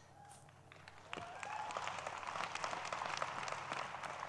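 A large audience applauding. The clapping starts about a second in and goes on as a steady patter.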